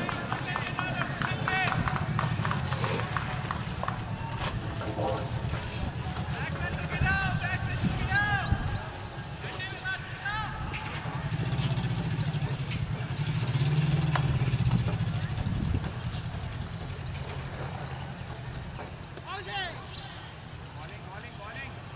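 Voices of cricketers calling and shouting across an open ground in several short spells, over a steady low rumble.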